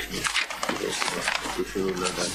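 Indistinct speech: voices talking too unclearly for the words to be made out.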